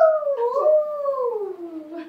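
A toddler imitating an animal call: one long, drawn-out vocal cry that wavers and falls steadily in pitch, like a howl or a stretched-out meow.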